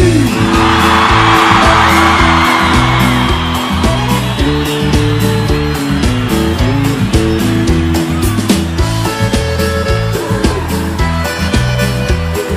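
Live sertanejo band music starting up, with a rhythmic bass and held chord notes, while a crowd cheers loudly over the first few seconds before the cheering fades.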